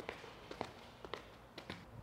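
Faint footfalls of an athlete doing an A skip sprint drill: paired taps of the skipping feet, about twice a second.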